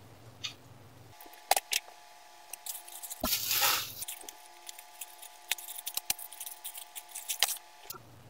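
Plastic mailing bag being handled and opened: crinkling and sharp crackles of the plastic, with a longer ripping tear about three seconds in.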